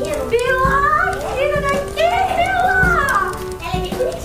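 A high-pitched voice, sliding up and down in pitch as in wordless vocalising or sung lines, over background music with a steady held note.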